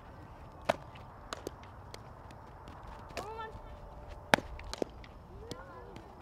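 Sharp smacks of a softball during throwing and fielding drills: one about a second in and a louder one past the four-second mark, with fainter clicks between. Two short shouted calls from players, one around three seconds and one near the end.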